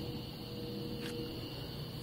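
Aftermarket electric fuel pump running with a steady hum while it primes the diesel fuel line, with a single light click about a second in.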